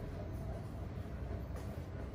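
Hands rubbing and pressing through wet hair in a scalp massage, with a faint scrunch about one and a half seconds in, over a steady low rumble.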